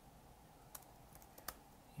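A few faint keystrokes on a computer keyboard, soft separate clicks in the second half, over near silence.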